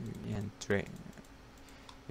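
A man says one word, and a few faint clicks from the computer's controls follow during a quiet pause.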